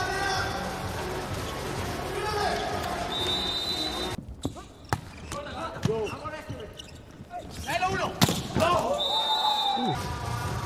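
Volleyball rally on an indoor court: sharp hits of the ball and squeaks of players' shoes on the court floor. The loudest hit comes about two seconds before the end. The first four seconds are filled by arena music.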